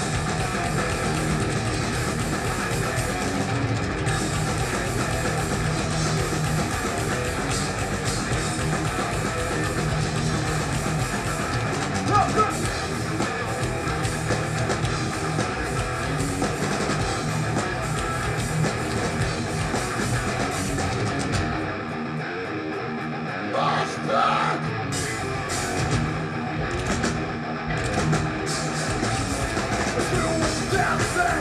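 Thrash metal band playing live: distorted electric guitars, bass and drum kit. A little past the two-thirds mark the bass and cymbals drop out for about two seconds, then the full band comes back in.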